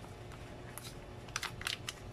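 Foil drink pouches crinkling as they are handled, with a few sharp crackles in the second half.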